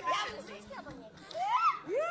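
Children's voices talking and calling out during a game, with one high voice sliding up in pitch near the end.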